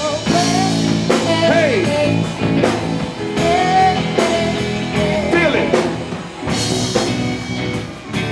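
Live rock band playing: electric guitar over keyboard and a drum kit, with bending lead notes and steady drum hits.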